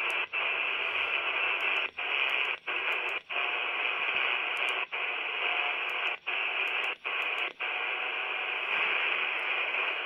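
Steady hiss from a Quansheng UV-K6 handheld's speaker, tuned to an empty 40-metre band in LSB with no station coming through. It drops out briefly about eight times as the frequency is stepped.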